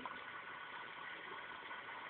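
Faint, steady background hiss with no distinct events: room tone and microphone noise in a pause between words.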